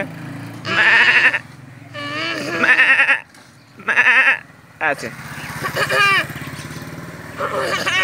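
A small child imitating a goat's bleat: three short, wavering bleats in the first half. A motorcycle engine hums in the background afterwards.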